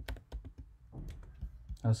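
Typing on a computer keyboard: a quick run of sharp key clicks in the first second, then a few more scattered keystrokes.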